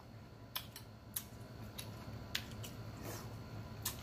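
Faint chewing with a scattering of sharp, separate wet mouth clicks and lip smacks, about eight in all.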